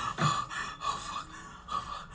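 A man gasping and panting hard, quick breaths about three a second: out of breath after running.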